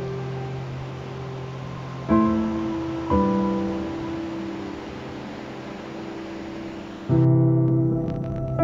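Background music of slow, sustained piano chords, with new chords struck about two, three and seven seconds in, each left to fade.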